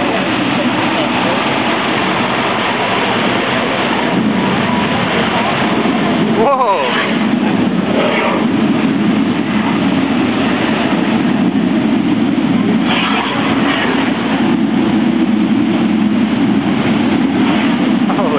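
Mirage volcano attraction erupting: a loud, steady rushing roar of water jets and natural-gas flames, with crowd voices mixed in. The roar grows deeper and stronger about seven seconds in.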